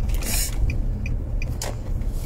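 Low steady rumble, with a short hiss shortly after the start and a few faint ticks.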